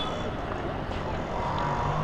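Steady low rumble of traffic and vehicle engines in the background, with no distinct knocks or clicks. A faint voice comes in during the second second.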